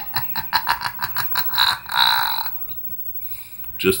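A man laughing hard in a quick run of short bursts, about five a second, that dies away after about two and a half seconds.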